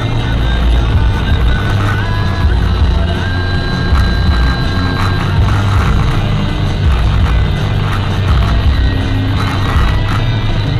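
Music playing on a car radio, heard inside the moving car's cabin over a steady low road rumble.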